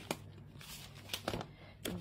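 Flexible oat packet crinkling as it is handled and shaken over a glass jar, in a handful of short, separate rustles.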